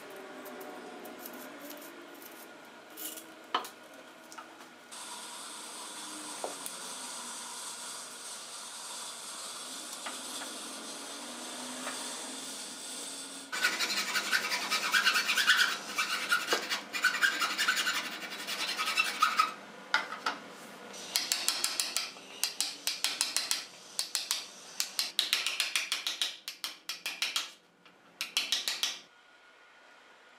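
Rapid scraping strokes of a hand tool shaping the end of a hickory wagon pole. They come in runs with short pauses, preceded by a steady hiss lasting several seconds.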